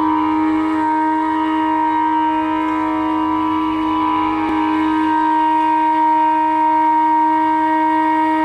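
Bansuri (Indian bamboo flute) holding one long, steady note in Raag Yaman Kalyan, over a faint tanpura drone.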